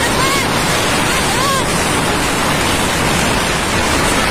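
Wind rushing over the microphone of a moving motorcycle: a loud, steady noise with no letup, with a couple of faint brief voice-like calls in the first second and a half.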